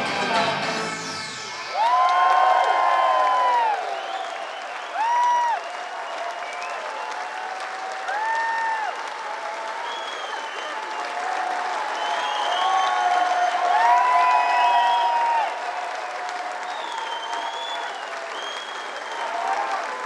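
A live synth-pop band's song ends with its bass cutting off about two seconds in. A concert crowd then applauds and cheers, with several long whistles rising and falling over the clapping.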